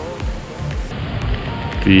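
Background music with a steady low beat over an even hiss of light rain; a man's voice starts speaking at the very end.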